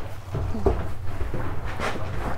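A person shifting and stepping about inside a yacht's carbon cabin: a few short knocks and some rustling over a steady low rumble.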